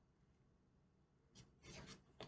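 Near silence, then faint rubbing of oracle cards being handled and slid against each other in the last half-second.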